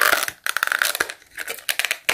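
Thin clear plastic packaging crinkling and crackling in short bursts as it is handled in the fingers.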